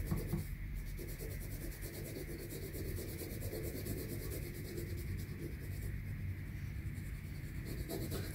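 A red wax crayon rubbing back and forth on a paper cutout, colouring it in with a steady run of quick strokes.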